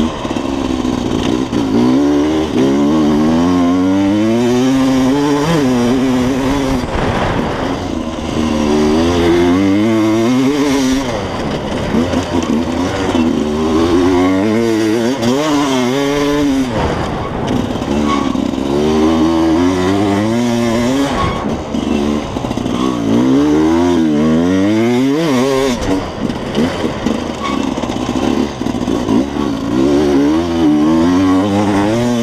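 Enduro motorcycle engine revving hard, its pitch climbing and dropping again and again as the rider accelerates, shifts and backs off through a race special test, heard close up on board.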